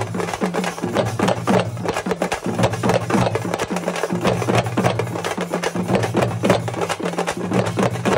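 A street drum band playing a fast, loud, driving rhythm: a large bass drum and smaller hand-played drums struck several times a second, over a steady low hum.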